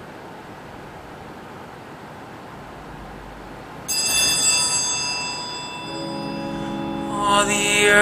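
Quiet room hiss, then about four seconds in a sudden ringing chord with many bright overtones that slowly fades, followed by a sustained lower chord: the instrumental introduction to the opening hymn. A voice begins singing near the end.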